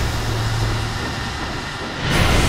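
Steam train running: a steady, loud, noisy rumble with a low drone underneath.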